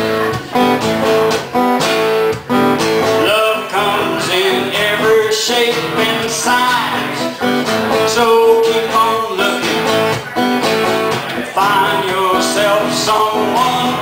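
Live acoustic guitars playing an instrumental break: strummed chords with a melody line that bends in pitch over them.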